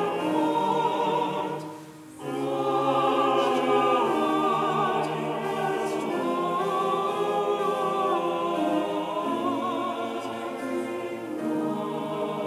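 Mixed church choir of men's and women's voices singing in harmony, with a short break between phrases about two seconds in.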